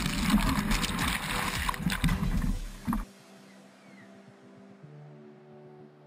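Loud rush and splash of breaking whitewater right at an action camera's microphone, cutting off suddenly about halfway through. After that, faint background music with held notes.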